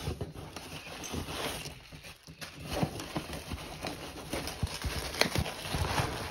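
Cardboard shipping box being opened by hand and its plastic contents handled: irregular rustling and scraping with scattered knocks and taps.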